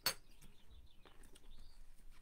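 A single sharp click at the start, then faint high chirps over quiet room tone.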